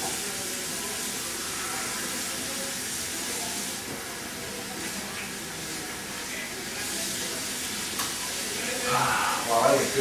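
Water running steadily from a tap into a restroom sink as someone washes at it. A short louder burst of voice near the end.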